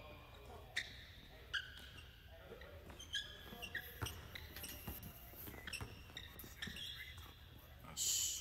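Faint basketball dribbling on a gym's hardwood floor, with scattered short, high sneaker squeaks.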